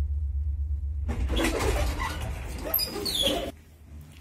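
A 1989 KMZ passenger lift car runs with a steady low hum. From about a second in comes a rattling clatter with high squeals as the lift stops at a floor and its sliding doors open. Everything cuts off suddenly about three and a half seconds in.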